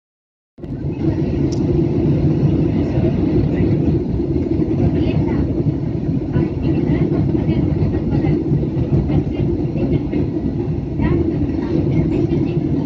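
Airliner cabin noise heard from a window seat in flight: a loud, steady low roar of the jet engines and airflow, starting about half a second in. Faint voices are heard underneath.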